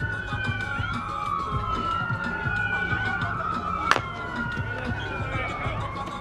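Emergency-vehicle siren wailing, its pitch slowly rising and falling, with two wails overlapping. A single sharp crack about four seconds in, an aluminium softball bat hitting the ball.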